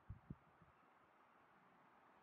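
Near silence: faint background ambience, with three short, faint low thumps in the first half second.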